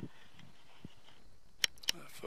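Faint background hush with two short, sharp clicks near the end, about a quarter second apart.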